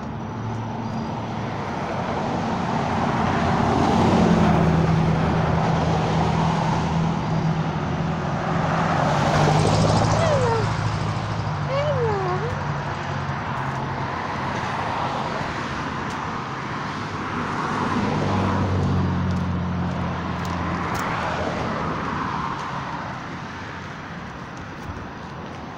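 Road traffic: motor vehicles passing on the adjacent road, the noise swelling and fading about three times, with a steady low engine hum underneath.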